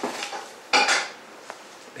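A shrink-wrapped box set being slid out of a cardboard mailer: a short, loud scrape of packaging about three-quarters of a second in, with softer handling noise around it.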